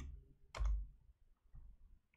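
A single sharp computer click about half a second in, followed by a few faint ticks over a low hum.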